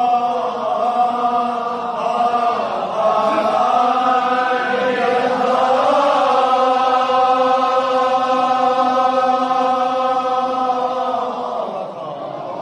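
Men's chanting of a Kashmiri marsiya, a devotional elegy: long drawn-out held notes whose pitch wavers slowly, sung almost without a break and dropping away near the end.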